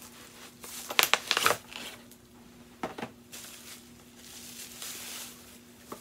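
Paper or plastic packaging crinkling and rustling as plates are unpacked from a gift box, in bursts that are loudest about a second in, with a softer rustle through the middle.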